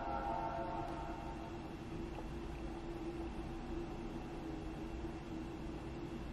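A ringing chord, the tail of the Mac startup chime, fades out in the first second as the MacBook powers on. A faint steady hum with a low tone follows while it boots to the Apple logo.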